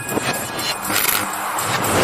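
A noisy whoosh transition sound effect from an animated channel intro, surging a few times over the fading tail of the intro music.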